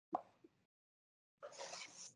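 A sharp click near the start with a fainter one just after it, then about a second and a half in a short breathy hiss close to the microphone, like a breath or sniff.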